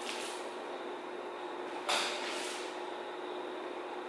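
Low room noise with a faint steady hum, and a brief rustle about two seconds in: handling noise as the violinist brings the violin and bow into playing position.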